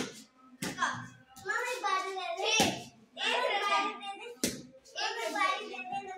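A wooden cricket bat strikes the ball with a sharp knock at the very start, followed by a few more sharp knocks. Between the knocks, children's voices shout and talk excitedly.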